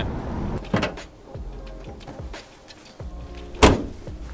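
VW T25 van with a swapped-in 2.0-litre Golf GTI petrol engine running on the road, heard inside the cab as a steady low rumble that drops away about a second in. Near the end, a single loud thud of a van door shutting.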